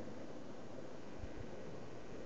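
Steady faint hiss of wind and microphone noise, with two soft low bumps a little past a second in.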